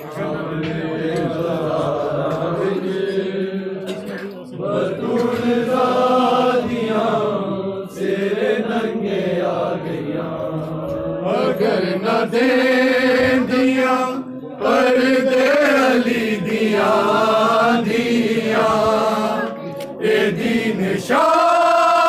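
Male voices chanting a noha, a Shia lament, in long sung phrases that rise and fall, louder in the second half.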